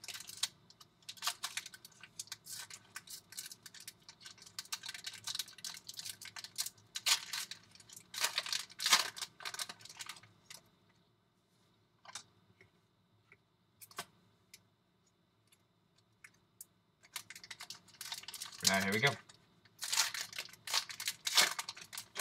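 A foil trading-card pack being opened and its cards handled: crisp crinkling and rustling of the foil wrapper and cards, which falls almost silent for several seconds in the middle and then starts up again.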